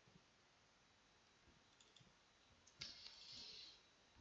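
Near silence with a few faint computer mouse clicks, a sharper click near three seconds in followed by about a second of soft hiss.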